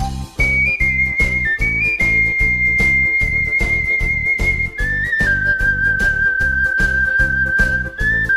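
Osawa ceramic triple ocarina playing a slow melody in pure, whistle-like tones: a few short high notes, then one long note held about three seconds, then a slightly lower note held about three seconds. Underneath runs a karaoke backing track with a steady drum beat and bass.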